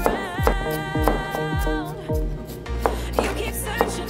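A pop song with a sung vocal line over a steady beat, and beneath it a cleaver chopping carrot against a cutting board in a series of sharp knocks about every half second.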